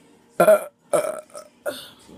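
A woman belching loudly, the biggest burst about half a second in, followed by two shorter ones.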